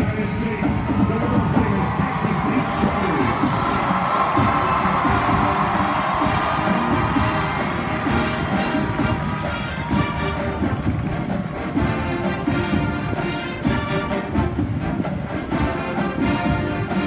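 Marching band playing brass and drums, with a crowd cheering; a steady beat sets in about halfway through.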